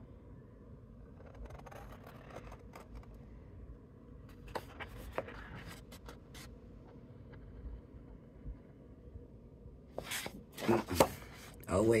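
Scissors cutting into cardstock: a few faint snips and ticks, then a louder rustle and crackle of the card being handled about ten seconds in.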